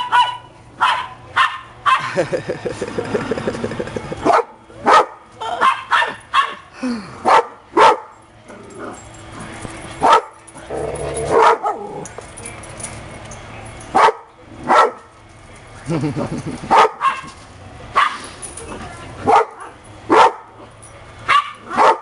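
Several small dogs barking and yipping over and over in short, sharp calls as they play.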